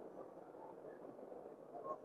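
Faint room tone, close to silence, in a pause between speech; a soft brief sound near the end.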